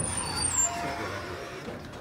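Otis Elevonic 411 elevator doors sliding open on arrival: a rushing hiss with a thin high squeal at the start and a steady tone for about a second.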